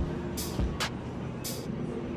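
Indoor store ambience: a steady low hum with faint background music, a couple of soft footsteps and a few brief rustles from a handheld camera being carried while walking.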